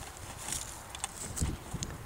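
Footsteps on dry, tilled vineyard soil: a few light scuffs and clicks, with a low thump about halfway through.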